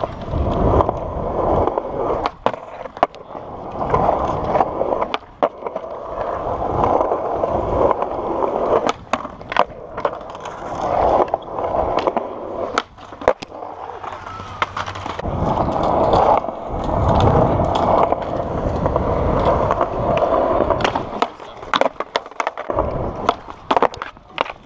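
Skateboard wheels rolling on a smooth concrete bowl, a steady rolling noise that swells and fades in waves as the rider carves up and down the walls. Many sharp clacks of the board and trucks cut through it.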